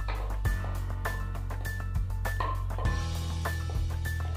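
Background music with a steady beat of percussive strokes about two a second over held bass notes; the bass changes about three seconds in.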